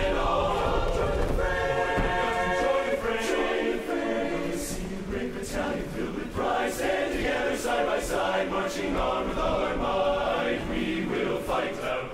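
A large men's barbershop chorus singing a cappella in close harmony, many voices together with no instruments.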